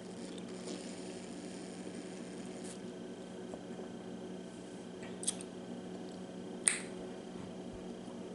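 Two sharp, light clicks about a second and a half apart, over a steady low hum.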